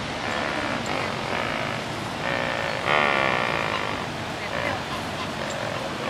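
Flamingos calling: a run of short, nasal, pitched calls, the loudest about halfway through, over a steady wash of background noise.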